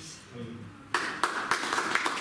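A small group of people clapping, starting suddenly about a second in after a moment of faint voices.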